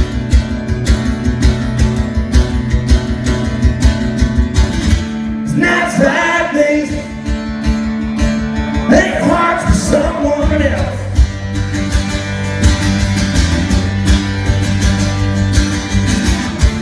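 Acoustic guitar strummed steadily in a live solo performance, a mostly instrumental stretch with a voice coming in only briefly about six seconds in and again about nine seconds in.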